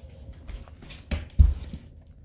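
Rustling and rumbling from a handheld phone being swung about, with a few dull thumps (the loudest a little past the middle) and faint clicks.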